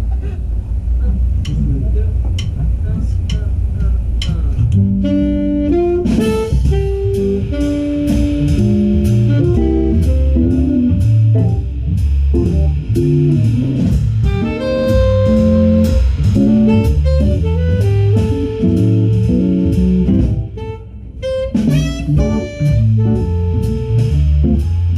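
Live jazz band playing: electric guitar, keyboard and drum kit. Sparse drums and low rumble for the first few seconds, then the full band comes in with a steady groove about five seconds in.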